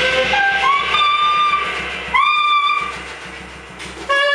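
Tenor saxophone playing high held notes, with a drum kit played underneath. About halfway through it scoops up into a loud held note, then the playing drops off in level before a new note starts at the very end.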